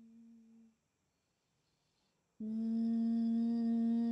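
A steady held humming tone at one unchanging pitch. It fades away within the first second, and after about a second and a half of silence the same tone starts again suddenly and holds.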